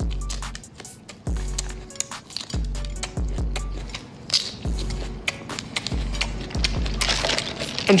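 Background music with a repeating deep bass line, under close-miked chewing and lip-smacking: sharp wet mouth clicks throughout as a man eats a pickled chili pepper.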